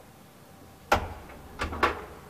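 1936 ASEA traction elevator car coming to a stop at a floor: one sharp metallic clunk about a second in, then two more knocks close together near the end.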